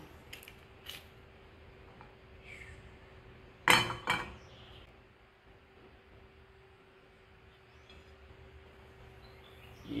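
A small frying pan clanks against the stove's metal grate: a loud knock with a ring a few seconds in, then a second knock, as the pan is tilted to spread the heating oil across its base. A steady faint hum runs underneath.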